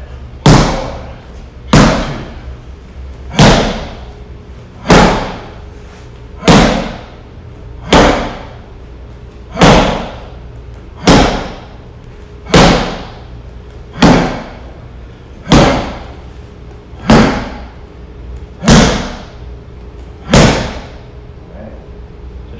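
A bare fist punching a handheld Impact Pad striking shield: fourteen sharp, loud smacks at an even pace, about one and a half seconds apart.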